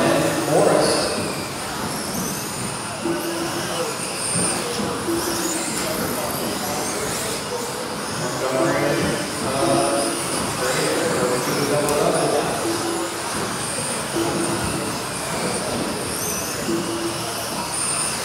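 Electric RC buggies with 17.5-turn brushless motors whining as they race, the high pitch rising and falling again and again as the cars accelerate and slow through the corners.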